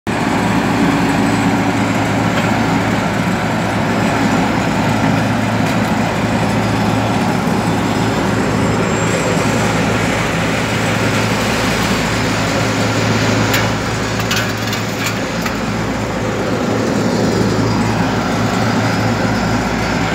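Diesel engines of asphalt-paving machinery, a paver and a steel-drum roller, running steadily with a constant low hum. A few short clicks come about two-thirds of the way through.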